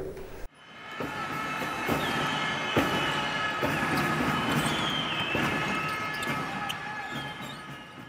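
A basketball bouncing on a court, a handful of separate bounces over a steady hall din, with a few short high squeaks. The sound fades in just after the start and fades out near the end.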